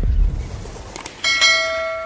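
Subscribe-button sound effects: two short mouse clicks about a second apart, then a bright bell ding that rings on and slowly fades.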